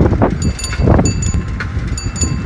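Bicycle handlebar bell rung several times from about half a second in, each strike leaving a short metallic ring, over the rumble and rattle of the bike rolling and wind on the microphone.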